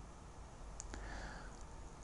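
Quiet room tone with a steady low hum and two faint small clicks about a second in.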